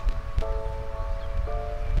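Background music of sustained chords that change about every half second, over a low rumble of wind buffeting the microphone.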